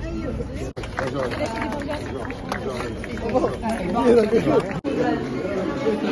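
Several people talking at once in overlapping, indistinct chatter, broken by two very brief dropouts in the sound, about a second in and near the five-second mark.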